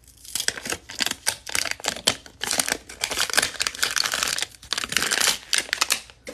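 A wrapper being peeled and torn off a Mini Brands plastic capsule ball: a dense run of crinkling and tearing crackles, pausing briefly about two seconds in and again past the middle.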